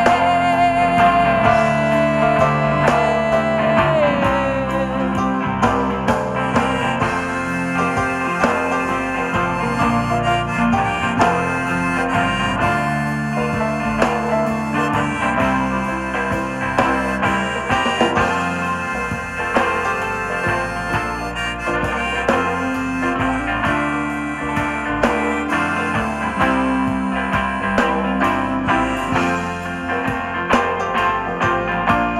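Live rock band playing an instrumental passage: a harmonica in a neck rack plays a lead line over electric guitars, bass and drums. A long held high note bends downward about four seconds in.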